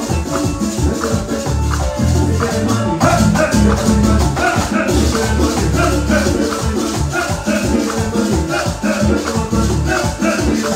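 A live Latin dance band playing at full volume: congas played by hand, electric bass, saxophones and drum kit, with shaker-like percussion driving the rhythm. The band gets a little louder and brighter about three seconds in.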